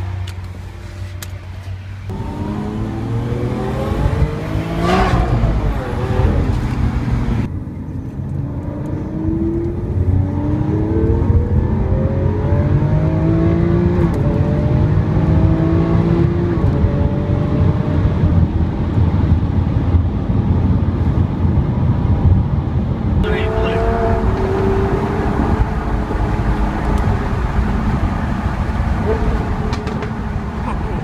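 Lamborghini Aventador's V12 heard from inside the cabin, idling and then accelerating, its note climbing in pitch again and again as it pulls through the gears.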